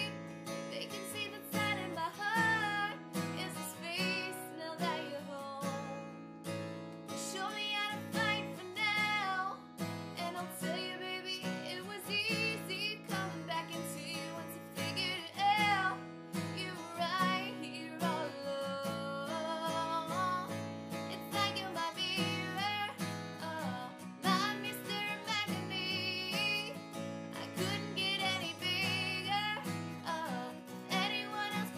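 A woman singing solo to her own strummed acoustic guitar, the strumming steady under a melody that she sings throughout.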